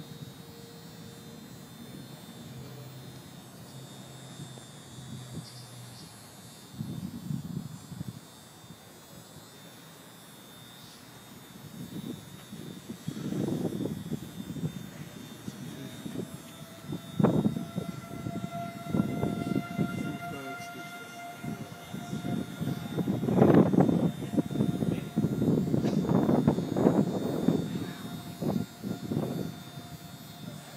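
Outdoor warning siren sounding from about halfway through: one steady wail with a slight rise in pitch, held to the end, the alarm of a tornado warning as a funnel cloud approaches. Irregular louder gusts of rough noise come and go over it.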